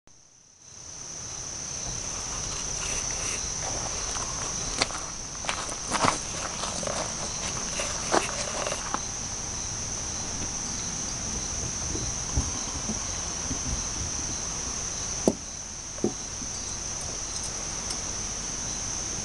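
Steady high-pitched trill of insects, with several short sharp clicks and knocks scattered through it, most of them in the first half and two more near the end.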